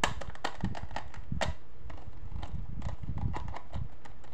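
Fingers and nails handling and tapping a hard-plastic toy handbag case: irregular sharp plastic clicks, the sharpest right at the start, over a low rubbing rumble as it is turned in the hands.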